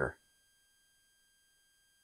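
Near silence, with a faint steady high-pitched tone running throughout, after the last of a spoken word right at the start.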